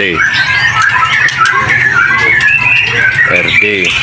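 A group of young white-rumped shamas (murai batu) in wire cages, many chirping and calling at once in a constant overlapping chatter of short calls.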